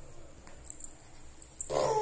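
A baby's whiny fussing vocalization, a wavering moan that starts near the end after a quiet stretch with a couple of faint taps.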